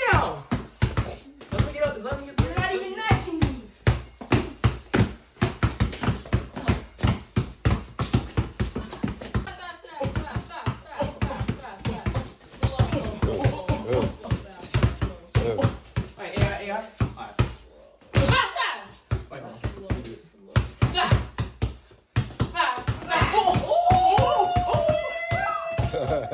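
Two basketballs dribbled hard and fast on a bare concrete floor: a rapid, uneven run of sharp bounces.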